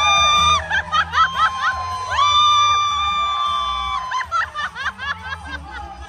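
Karaoke music played loud through a PA, with two long held notes, a short one at the start and a longer one of nearly two seconds from about two seconds in, over quick chirping sounds and crowd laughter.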